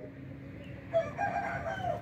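A rooster crowing once, starting about a second in and lasting about a second, over a low steady background hum.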